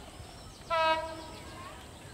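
An approaching diesel locomotive's horn sounding one short, steady single-note blast, starting a little after half a second in and lasting under a second. Faint bird chirps sound in the background.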